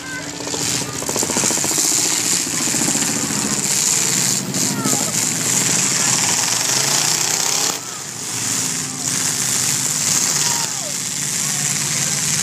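Several demolition derby cars' engines running and revving loudly across the arena, with a brief drop in level about eight seconds in.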